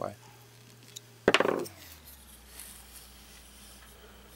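One sudden loud metallic clank about a second in, from the steel plane blade, cap iron and screwdriver being handled while the cap iron is screwed to the blade; otherwise faint room noise.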